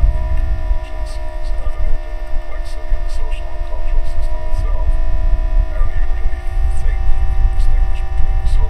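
Experimental noise piece made from re-recorded tape: several steady hum tones held over a heavy low rumble, with scattered faint clicks.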